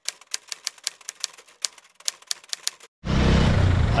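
Typewriter key clacks, a sound effect for on-screen text typing itself out: a quick, irregular run of sharp clicks. About three seconds in it cuts off and loud street noise sets in suddenly.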